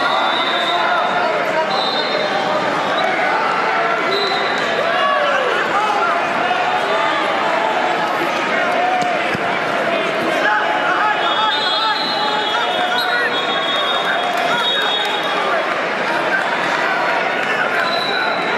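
Loud, steady din of a crowded wrestling tournament hall: many voices of spectators and coaches talking and shouting over each other, with brief high-pitched tones now and then.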